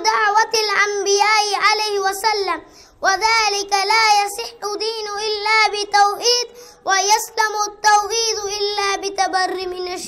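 A boy chanting Arabic in a melodic recitation style, as in Qur'anic recitation, with long held notes that waver in ornamented turns. He sings in three long phrases, with short breaks for breath nearly three seconds in and about six and a half seconds in.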